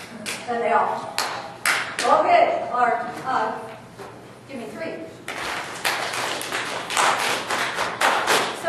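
Voices in a large room, broken by sharp taps and claps; from about five seconds in, a dense run of many claps and taps from a group.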